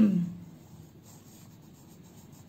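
Pencil writing on a paper workbook page: a faint scratching of the lead as a word is written out.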